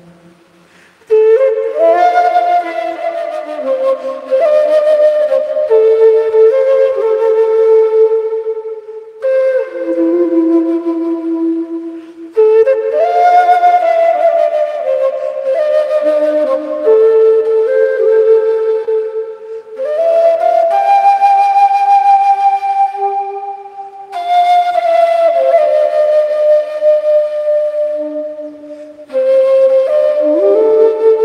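Large bamboo end-blown Andean flute of the quena family playing a slow melody of long held notes in phrases, with short breaths between them. It comes in about a second in.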